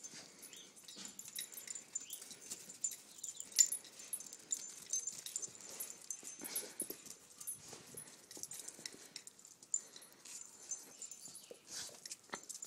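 Two dogs, a Labrador and a Yorkshire terrier, make faint whines and breathing sounds as the Labrador tries to mount the terrier, with a few short whines about halfway through.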